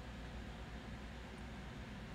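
Faint steady hiss of room tone, with no distinct events.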